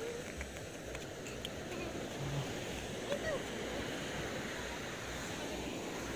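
Small surf waves washing up a sandy beach, a steady rushing noise.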